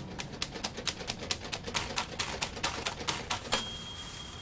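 A fast, irregular run of sharp clicks, several a second, that stops about three and a half seconds in. A faint, steady high whistle over a soft hiss follows.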